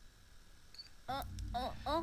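Quiet room tone with faint clicks for about a second. Then a Spanish-dubbed cartoon character's voice starts, exclaiming with sharply rising and falling pitch from the trailer playback.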